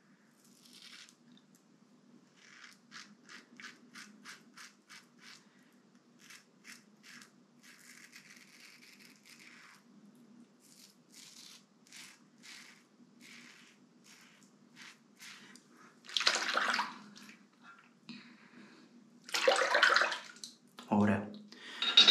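Rockwell 6C stainless safety razor scraping through two-day stubble in quick short strokes, about three to four a second, over a faint steady low hum. Near the end come two louder rushes of noise.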